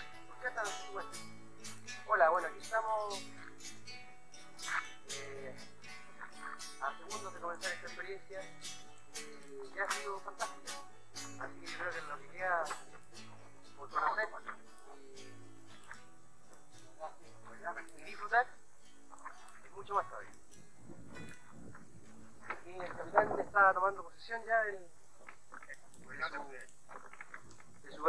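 A man's voice speaking in short phrases over soft background music. The music fades out about twenty seconds in.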